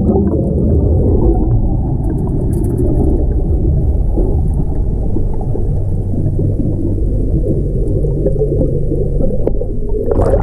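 Water churning and air bubbling around a helicopter underwater escape trainer cabin as it floods and capsizes, heard through an underwater camera: a steady, muffled low rumble.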